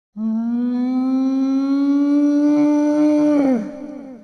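Intro sound effect: one long held note that creeps slightly upward in pitch for about three seconds, then drops and breaks into quick echoing repeats that fade away.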